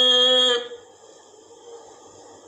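A man's reciting voice holding one long, steady vowel of a Quranic word, which ends about half a second in, followed by faint hiss.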